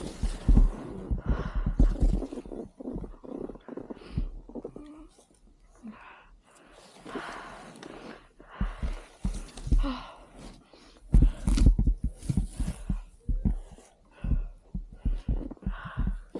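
A skier breathing hard from the effort of deep powder, in uneven bursts, with low thumps and rustling on the camera's microphone.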